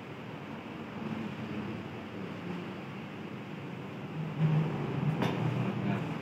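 Hot water poured in a thin steady stream from a gooseneck kettle into a pour-over dripper, heard as a soft even hiss. Near the end there is a bump and then a sharp knock as the kettle is set down on the counter.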